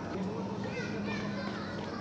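Children's high voices calling and chattering in the background, with other distant voices, over a steady low hum.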